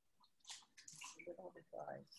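Near silence broken by a couple of faint clicks, then faint, indistinct speech in the second half.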